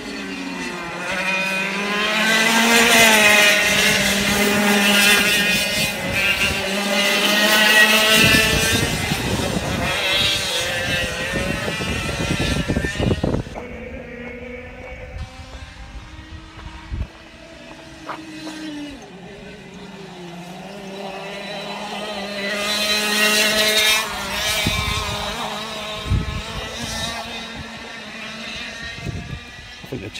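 Air-cooled 100cc two-stroke F100 kart engines passing on the track, their pitch rising and falling as the karts accelerate and brake. One loud pass comes a couple of seconds in and another about two-thirds of the way through.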